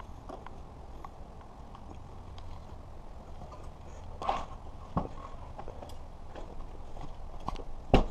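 Scattered clicks and knocks as a fat-tire e-bike is handled and tipped over. There is a rustling clatter about four seconds in and a sharp knock at the end.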